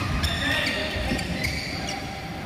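Badminton rally sounds in a large indoor hall: a couple of sharp racket hits on the shuttlecock, and brief high sneaker squeaks on the court mat.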